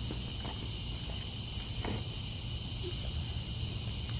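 Night insects chirring steadily, with a couple of faint knocks.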